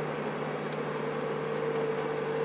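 Ponsse forwarder's diesel engine running steadily: a low, even hum with a steady higher tone above it.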